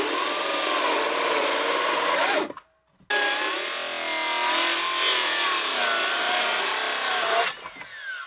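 Cordless circular saw cutting lengthwise through a short piece of 4-inch ABS plastic pipe, its motor whine wavering in pitch with the load. The sawing breaks off briefly a little over two seconds in, then runs again until near the end.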